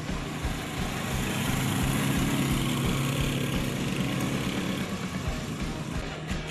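Motorcycle engines running as two motorcycles ride up close, a steady hum that grows louder toward the middle and then fades.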